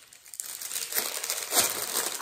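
Wrapping paper crinkling and rustling as a small present is unwrapped by hand, starting about half a second in, with louder rustles around the middle.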